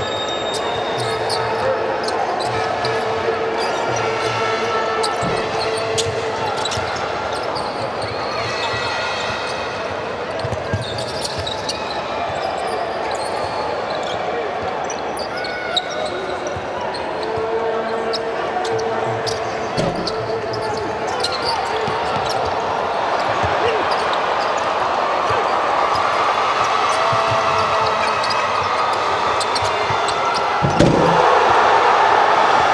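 Live sound of a basketball game in an arena: a basketball being dribbled on a hardwood court, with many scattered knocks, under a steady background of voices and crowd noise in the hall. The crowd noise builds over the last several seconds.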